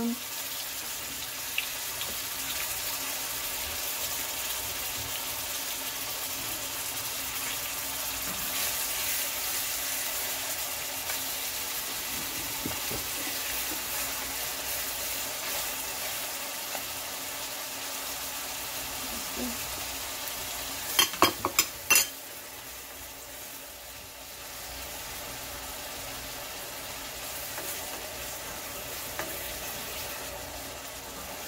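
Chopped onion sizzling as it fries in oil in a stainless steel pan, stirred with a wooden spoon. About 21 seconds in come four sharp knocks in quick succession, the loudest sound.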